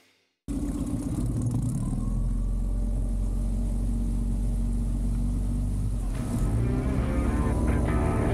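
Tohatsu MFS15 four-stroke tiller outboard, converted to 20 HP with a new ECU and the restrictor plate removed, running steadily at speed, with the rush of wind and water over it. It cuts in suddenly about half a second in, and rock music with guitar comes in over it about six seconds in.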